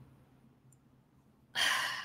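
A woman's audible breath about a second and a half in, a short noisy breath without voice that fades off, after a near-silent pause.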